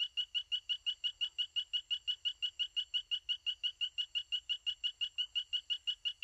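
Recorded advertisement call of a three-striped poison frog (Ameerega trivittata): a long series of short, identical, high-pitched notes, about seven a second, repeated without a break at very regular intervals.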